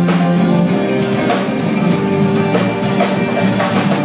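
Live band playing a rock song: a drum kit keeps a steady beat under strummed acoustic guitar and bass.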